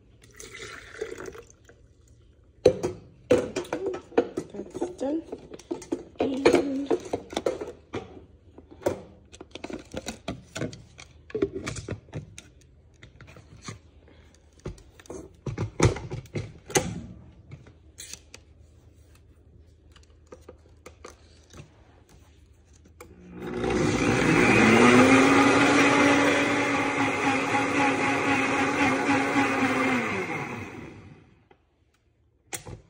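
A series of clicks and knocks as the NutriBullet blender jar is handled. About 23 seconds in, the blender motor starts, spins up quickly and runs steadily for about seven seconds, blending shake mix with water, then stops at the end.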